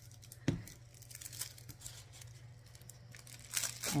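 Metallic foil tinsel and foil stars crinkling and rustling as they are handled, with a sharp click about half a second in.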